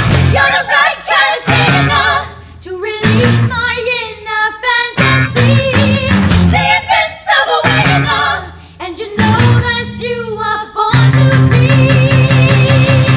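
Rock song with a female lead vocal singing over short stop-time band hits, with an electric bass guitar playing brief accented notes between rests. About eleven seconds in, the full band returns with a steady driving bass line.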